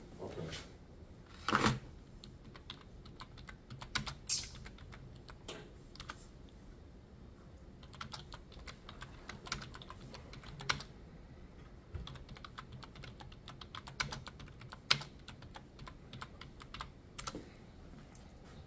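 Typing on a computer keyboard: irregular key clicks with short pauses and a few louder taps.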